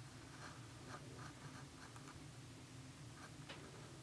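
Faint, irregular scratching sounds, a dozen or so short scrapes in the first three and a half seconds, over a low steady hum.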